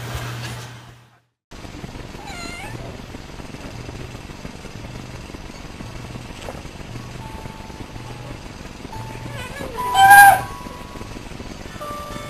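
Domestic cat meowing: a soft meow about two and a half seconds in and a loud, drawn-out meow about ten seconds in. Light background music with a steady low beat plays under it.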